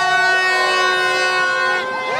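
Several horns blowing long steady notes at once, overlapping at different pitches, with a few short pitch bends near the end.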